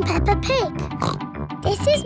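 A cartoon pig character's voice, a girl's voice speaking and giving pig snorts, over cheerful children's theme music with a steady beat.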